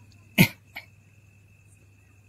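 A person coughs once, sharply, then gives a smaller second cough. Crickets chirp steadily behind it.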